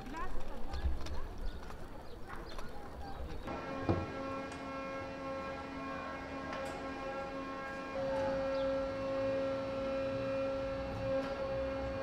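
Low outdoor rumble and voices, then from about 3.5 s in a steady machine hum of several held tones, which gets louder about 8 s in: the hydraulic drive machinery of the giant wooden mechanical elephant running in its workshop hangar.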